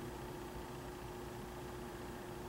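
Faint room tone: a steady low hiss with a thin, steady hum underneath, and no clicks or other events.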